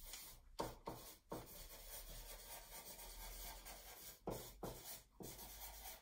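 Marker pen writing on a large paper sheet fixed to a wall: faint scratching of the felt tip on paper, with a few short, louder strokes here and there.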